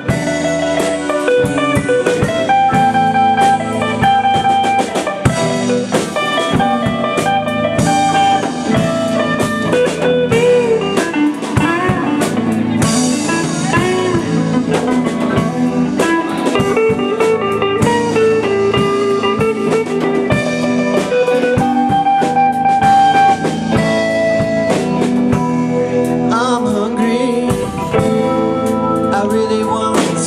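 A live band playing an instrumental stretch of a blues-style song: electric guitars with bending, wavering notes, keytar and a drum kit keeping a steady beat.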